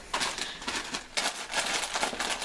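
A dense run of rapid crackling, rattling clicks from something being handled at a kitchen counter.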